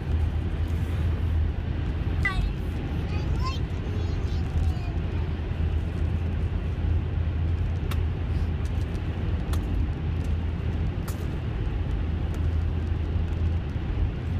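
Steady road noise heard from inside a moving car's cabin: a low, even drone of engine and tyres at cruising speed. Faint voice sounds come through briefly about two to four seconds in.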